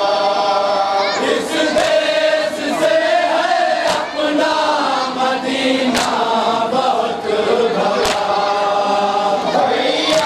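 A group of men chanting a nauha, a Shia lament, in unison, with a sharp chest-beat (matam) strike about every two seconds, four times.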